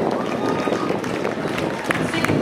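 Indistinct voices of spectators calling out at an athletics track over a steady outdoor noise, with a short tap near the end.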